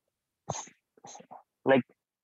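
A man's short, sharp breath noise about half a second in, followed by a few faint mouth sounds between words.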